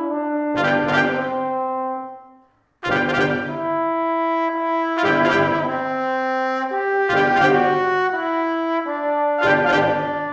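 Brass quintet of two trumpets, French horn, trombone and tuba playing together: accented chords about every two seconds with held notes between them, and a short full stop about two and a half seconds in.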